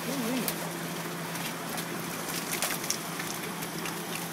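Water pouring from a fish lift's trap chute and splashing into a holding tank, a steady rushing noise with a low, steady hum underneath. A few sharp knocks come through, about half a second, a second and a half and nearly three seconds in.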